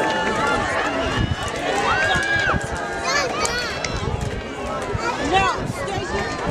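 Voices of people nearby talking and calling out, several raised high-pitched calls among them, over outdoor background noise.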